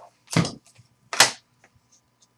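Trading cards and their packaging handled on a table: two short, sharp sounds about a second apart, then a few faint ticks.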